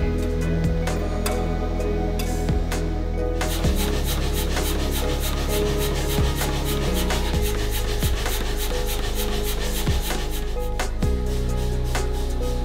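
Background music with sustained low notes and occasional deep thuds, over which a dense, rapid clicking texture starts about three and a half seconds in.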